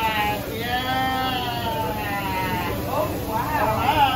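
High-pitched voice holding long, wavering drawn-out notes, then a few quick rising-and-falling squeals near the end, over dining-room chatter.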